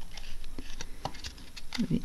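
Fingers handling a small cardboard cosmetics box, a scatter of light clicks and taps.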